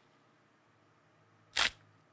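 Near silence, then a single short, sharp click about one and a half seconds in.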